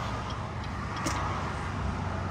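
Steady low rumble of a car's engine and tyres heard from inside the cabin while driving, with a faint click about a second in.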